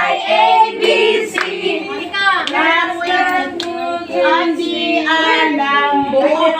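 A group of women and children singing together, with a few sharp hand claps over the song.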